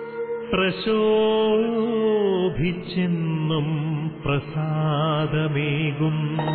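Devotional song: a voice holding long notes with vibrato and sliding between them, over instrumental backing.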